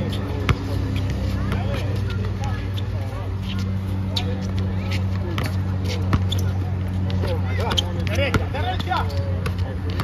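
A basketball being dribbled on an outdoor hard court, with repeated sharp bounces, under players' voices and a steady low hum.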